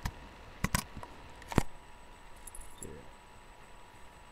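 A few sharp clicks and knocks from objects being handled, the loudest about a second and a half in, with fainter high ticks after.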